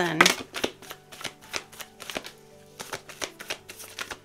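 Oracle cards being shuffled by hand: a run of quick, soft card flicks and taps, with faint background music.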